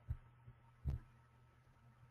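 A low steady hum with two short, dull thumps, one just after the start and one just before a second in.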